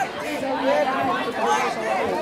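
Many voices talking and calling out at once: overlapping chatter from the players and onlookers around the court.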